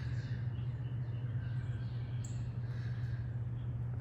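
Steady low hum under a faint, even background noise, with one brief high chirp about two seconds in.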